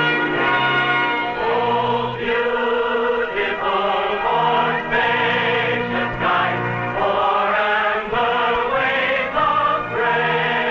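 Film score music over the closing credits: a choir singing sustained notes that change about every second.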